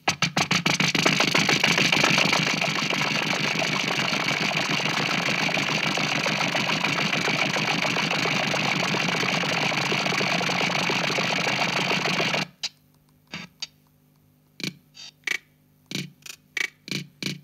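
Casio CZ-230S bossa nova drum rhythm played through an Alesis Midiverb 4 multi-effects processor, the effect smearing the hits into a dense, steady wash of noise. The wash cuts off suddenly near the end, leaving a few separate dry percussion hits.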